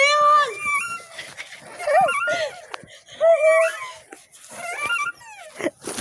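Boys' high-pitched laughter and squeals in several separate bursts with short pauses between.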